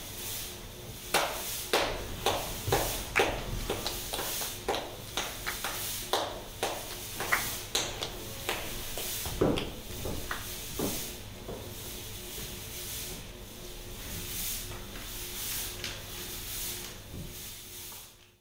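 Footsteps on a wooden stage floor: a run of sharp, uneven knocks about two a second for the first ten seconds or so, then fainter, over a steady low hum.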